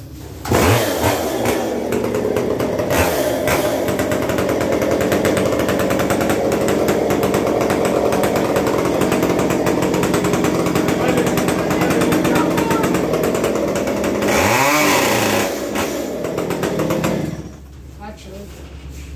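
Petrol chainsaw coming up to speed about half a second in and running steadily. Near the end it revs up once and falls back, then cuts out.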